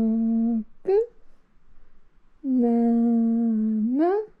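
A person humming long, steady low notes, each about a second and a half, with a short rising hum between them; the second note ends in a quick upward slide.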